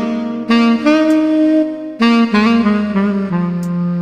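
Casio CTX-3000 keyboard playing a layered arrangement: a lead melody in a saxophone voice over held chords. A low bass note joins a little past halfway.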